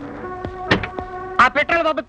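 Film soundtrack: sustained background-music tones punctuated by a few sharp percussive hits, then a voice coming in about a second and a half in.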